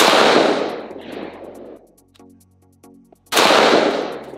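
Two shots from a CMMG Mk57 Banshee AR-15-pattern pistol in 5.7x28mm, one at the start and one a little over three seconds later, each followed by a long echo dying away.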